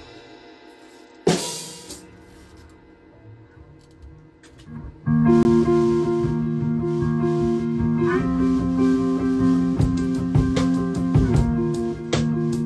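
Rock band with electric guitar, electric bass and drum kit starting a song. One loud strike rings out about a second in, then held guitar and bass chords come in about five seconds in, and drum hits join around eight seconds.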